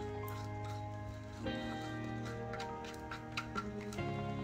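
Background music of soft sustained chords that change twice, with a few light ticks in the last second or so.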